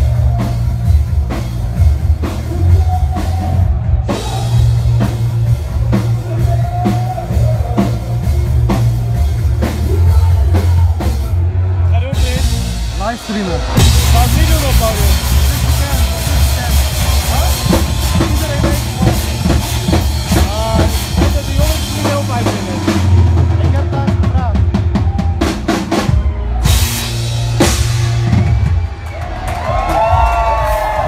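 Live band playing loud music, with drum kit and bass prominent, amid the voices of a crowd.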